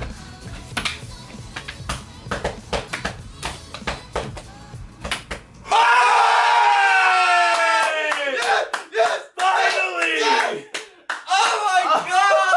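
Background music with many sharp clicks runs for about six seconds. Then the music cuts off and a man lets out a long, loud celebratory yell that falls in pitch, followed by more excited shouting.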